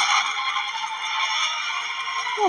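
Sound effect from the animated short's soundtrack: a sudden hit, then a steady hissing, crackling noise.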